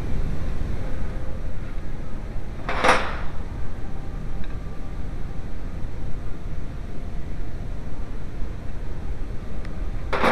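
Steady low rumble with faint small clicks of tool work in an engine bay, broken by a short loud swish about three seconds in and another at the end, where the picture cuts to a title card.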